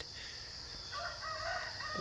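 A faint rooster crowing, starting about a second in with a few short notes and then a held note that runs on past the end, over a steady chorus of crickets.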